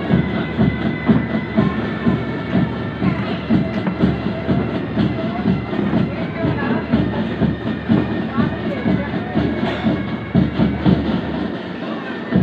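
Crowd noise close to the microphone: spectators' voices over a continuous low rumble with irregular thumps.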